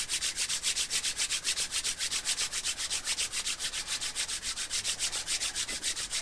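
Two palms rubbed together fast, a dry brushing sound at an even rate of about eight strokes a second.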